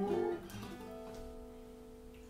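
Acoustic guitar strumming a chord about half a second in and letting it ring, the notes fading slowly.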